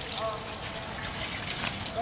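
Steady rushing noise with faint, distant voices calling briefly in it.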